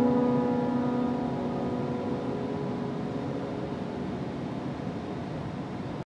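Grand piano's final chord sustaining and slowly dying away, fading to faint room hiss by about halfway through.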